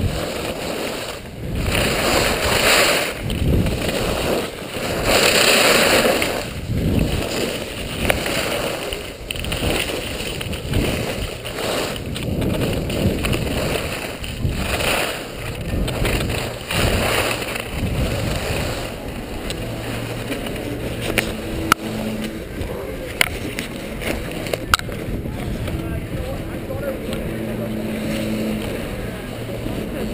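Skis scraping and carving on packed snow, with wind rushing over the microphone, swelling and fading with each turn. After about eighteen seconds the skier slows and the sound settles to a lower, steadier level, with a faint low hum and a few sharp clicks.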